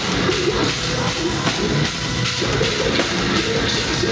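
A heavy metal band playing live: distorted electric guitar, bass guitar and drum kit with a driving bass drum, at a loud, steady level.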